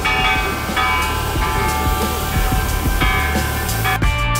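The bell hanging inside the Children's Peace Monument is struck several times. Each stroke sets off a ringing tone that carries on and overlaps the next.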